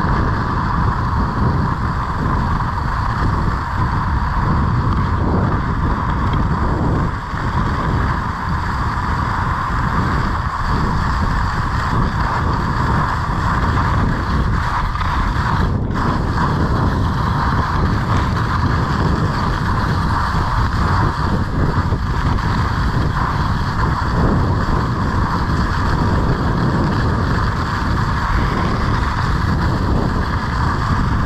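Wind rushing over an action camera's microphone while skiing downhill, with the steady hiss and scrape of skis on groomed snow underneath.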